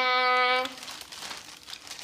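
A child's voice holding a long drawn-out vowel ends about two-thirds of a second in. After it comes faint, irregular crinkling of plastic wrapping being handled.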